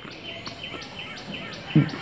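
A bird chirping repeatedly in the background: short high notes, several a second.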